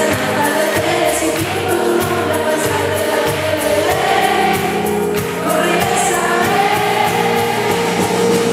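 Live pop ballad: a woman singing over acoustic guitar, electric bass and drums, the drums keeping a steady beat of light ticks.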